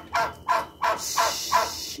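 Backyard poultry calling in a quick series of short calls, each falling in pitch, about three a second.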